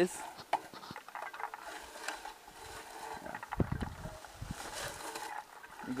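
Soft rustling and small clicks of a berry picker being drawn through low lingonberry shrubs, with a few dull low thuds a little past the middle.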